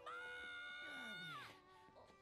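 Faint anime dialogue: a girl's high-pitched shout of "We're home!" drawn out for about a second and a half, over quiet background music.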